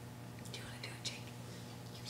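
Quiet room with a steady low hum and faint, brief whispering.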